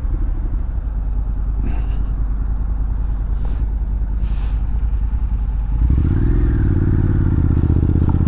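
Honda NC750X's parallel-twin engine running at low revs, then rising in pitch about six seconds in and holding there as the motorcycle accelerates.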